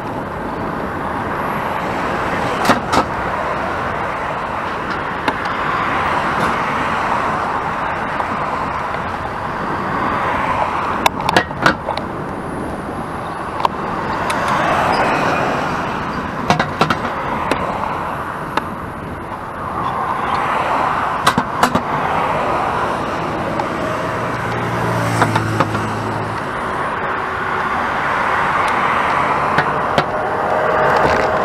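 Wind and road noise rushing over a handlebar-mounted action camera's microphone while cycling, swelling and fading, with traffic running on the road alongside. Several sharp clicks come now and then, and a deeper engine hum passes near the end.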